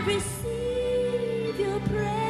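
Live Christian praise and worship music with singing, over sustained chords; one long held note through the middle.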